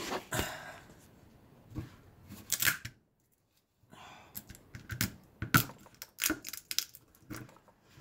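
Close handling noise of a phone camera being propped up and balanced: scattered knocks, clicks, scrapes and rustles. The sound cuts out completely for under a second about three seconds in.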